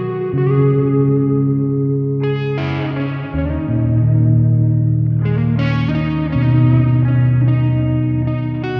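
Progressive rock music led by guitar through effects, playing sustained chords that change every two to three seconds.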